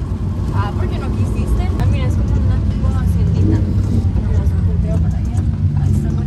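Lamborghini Huracán's V10 engine and tyre noise on a wet road, heard from inside the cabin as a steady low drone while cruising. Faint voices come over it in the first two seconds.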